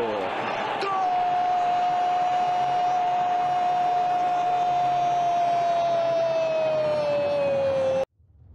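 Football commentator's long drawn-out goal shout, one held note for about seven seconds that sags slightly in pitch near the end, with crowd noise behind.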